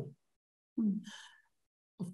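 A pause in conversation: about a second in, a short, low voiced sound runs into a breathy intake of breath.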